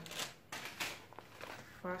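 Light rustling of plastic packaging handled and unwrapped by hand, in short scattered crinkles.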